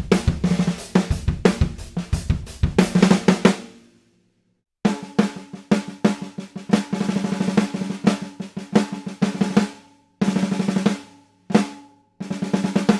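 Chrome-shelled Ludwig Supraphonic snare drum, 14 x 6.5, played with wooden sticks in short demo passages of strokes and rolls, with a ringing tone under the hits. The playing breaks off briefly a bit past a third of the way in, and again in short gaps near the end.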